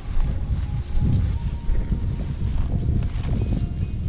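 Wind buffeting the microphone: a low, uneven rumble with no rhythm, along with handling noise from a moving, handheld camera.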